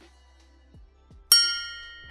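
A single bright, bell-like chime struck about a second in, ringing out and fading away, the closing sting of a channel logo intro.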